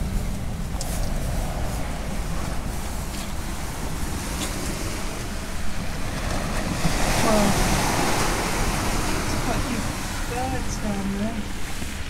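Wind buffeting the microphone over the hiss of waves breaking on a shingle beach; the surf grows louder about seven seconds in.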